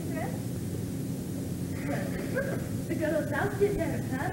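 Actors' voices speaking stage dialogue, thin and indistinct over a steady low hum, mostly in the second half.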